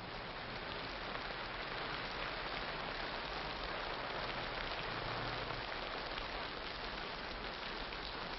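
Heavy rain falling, a steady dense hiss that swells a little in the first second or two, on an old film soundtrack with dulled highs.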